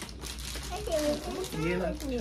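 Soft wordless voices, a young child's high vocalizing among them, over faint crinkling of plastic packaging being unwrapped.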